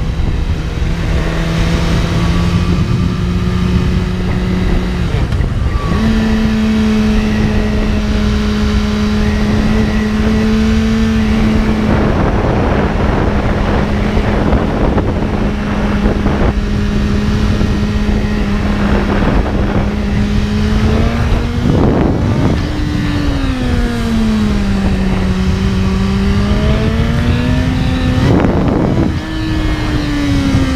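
BMW S1000RR inline-four engine running at steady cruising revs. The engine note steps up about five seconds in, then dips and rises again near the end with the throttle. Wind noise rushes across the microphone throughout.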